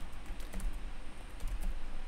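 Typing on a computer keyboard: a quick run of light keystrokes as a terminal command is entered.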